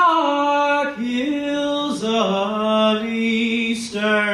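A man sings solo in a slow Appalachian folk ballad, drawing out long held notes, with his own acoustic guitar underneath.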